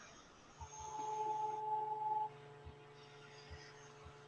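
Craft heat tool running briefly: a faint, steady motor hum lasting about a second and a half, starting about half a second in, with a few light knocks afterwards.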